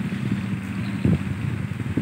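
Low, steady rumble of an engine running, with a few faint clicks.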